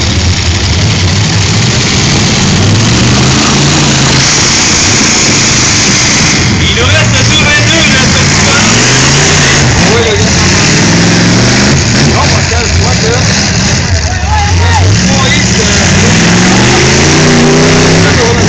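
Demolition derby cars' engines revving hard, the pitch rising and falling again and again as they push and ram one another, loud over a steady roar of noise.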